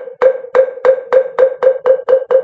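Moktak (Korean Buddhist wooden fish) struck in a quickening roll: about a dozen sharp hollow knocks, speeding up from about three to about six a second. This is the roll that closes a recitation.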